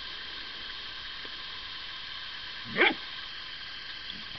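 A dog gives one short, loud yelp about three seconds in, rising in pitch, over a steady high hiss.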